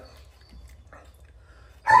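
A German Shepherd barks once, suddenly, near the end, after a mostly quiet stretch with only low background noise.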